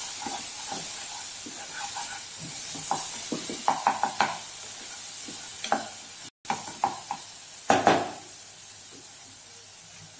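Onion and spice masala sizzling in oil in a saucepan while a spatula stirs and scrapes it, with clusters of scraping knocks against the pan. Near the end the stirring stops and a quieter sizzle remains.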